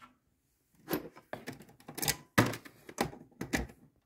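A quick run of irregular clicks and knocks, handling noise from the coffee maker's power cord and plug being checked and pushed home.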